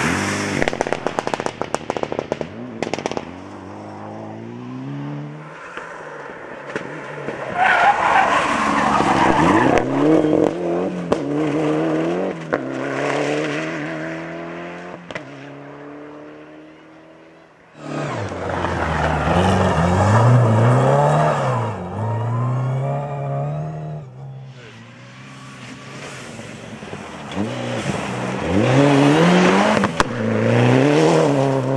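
Several rally cars at speed, one clip after another: engines revving hard, rising and dropping through gear changes. Gravel sprays and rattles off the tyres in the first few seconds.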